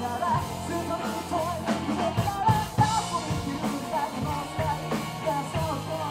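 Live rock band playing at full volume: drum kit, electric bass, electric guitar and keyboard, with a lead vocal line over them.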